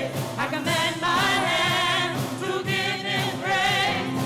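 A gospel praise team of several men and women singing together in harmony, amplified through microphones.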